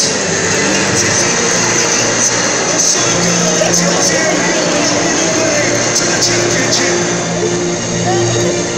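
Music playing over a football stadium's public-address system, with the crowd in the stands talking underneath.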